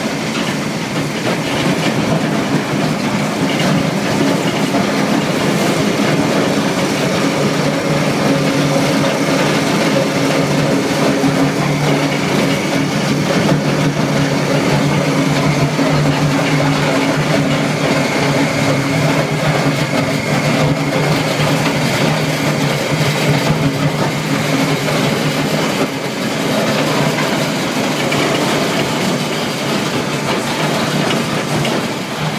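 Industrial tire shredder running: a loud, steady machine drone from its drive motor and cutting shafts, with a continuous dense rattle over a low hum.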